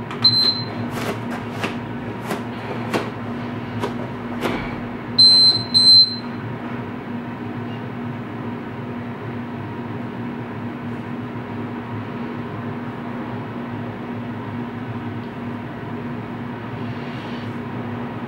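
An electronic interval timer beeps. There is a short high beep right at the start, and about five seconds later a quick run of beeps that ends the five-second rest and starts the work interval. Faint clicks come in between, and a steady low hum runs throughout.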